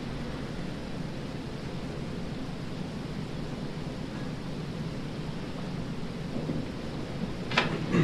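Steady, even background noise of the recording's room, a low rushing hiss with no voice in it, broken by one short sharp click near the end.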